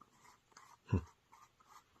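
Faint scratching and rubbing of fingers handling a small snuff tin, with one short soft thump about a second in.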